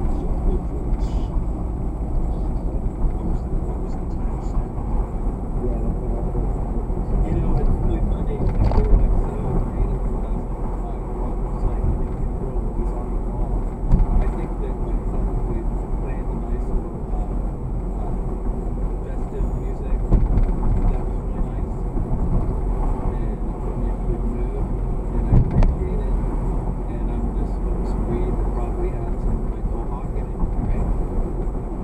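Steady in-cabin road and engine rumble of a car driving through city streets, picked up by a dashcam, with a few brief thumps along the way.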